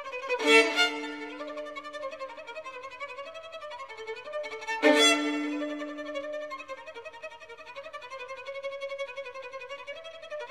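Solo violin playing a soft, fast staccato ostinato of repeated notes, broken twice, about half a second in and again near five seconds, by loud accented chords whose lower note rings on for a second or two.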